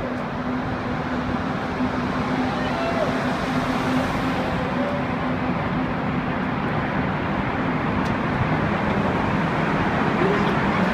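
Car traffic in a road tunnel: the hum of engine and tyres, growing gradually louder as a car approaches along the lane.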